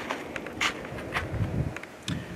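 Snow shovel scooping into packed snow: a few faint, short crunches and scrapes, with a brief low rumble about halfway through.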